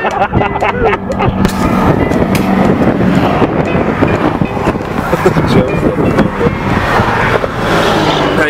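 Steady vehicle noise inside a moving car's cabin, with indistinct voices over it.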